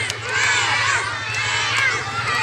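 A large group of young schoolchildren shouting and calling out together, many high voices overlapping.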